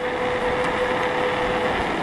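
Electric bike running at about 23 mph on throttle alone: steady rushing noise of riding at speed, with a thin steady whine from its 350 W rear hub motor that fades out near the end.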